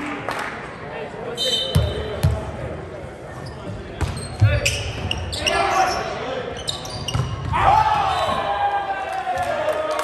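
Volleyball rally on a hardwood gym floor. A volleyball bounces twice on the floor about 2 s in, is struck hard about halfway through, and is hit again moments later, with sneakers squeaking. Players shout from about three-quarters of the way in, and the hits and voices echo in the large hall.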